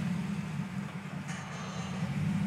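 Vehicle engine running with a steady low rumble while the long-stationary Scout is being towed.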